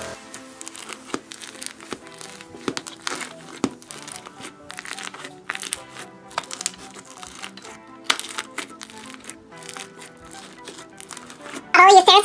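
Homemade fluffy slime full of styrofoam beads being squished and poked by fingers, giving off many irregular small crackles and pops, over quiet background music.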